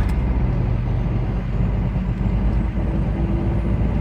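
Heavy truck's diesel engine running steadily under way, heard from inside the cab as a low, even drone mixed with road noise.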